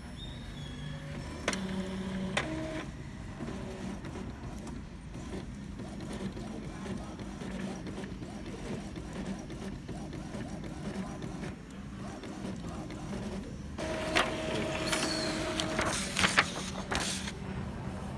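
Epson L3110 inkjet printer printing a nozzle check page: its motors run steadily as the sheet feeds and the print head works. A steady motor whine rises a few seconds before the end, followed by sharp clicks as the page comes out.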